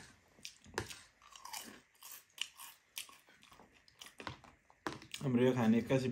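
Close-up chewing and crunching of chatpate, a spicy Nepali puffed-rice snack, in sharp, irregular crunches. A man starts talking about five seconds in.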